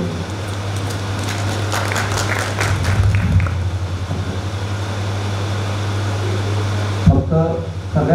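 Steady low electrical hum through a public-address system while the speaking stops, with a short run of faint clicks and murmur in the first few seconds; a man's amplified speech picks up again about seven seconds in.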